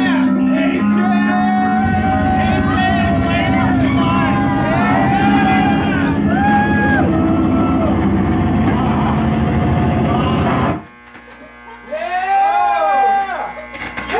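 Loud live electronic music with a heavy, steady bass drone and wavering pitched tones over it, cutting off suddenly about eleven seconds in. Voices shout after it stops.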